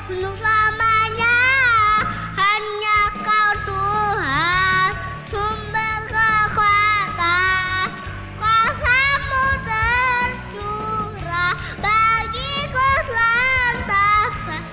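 A four-year-old boy singing an Indonesian worship song into a microphone, with musical accompaniment underneath.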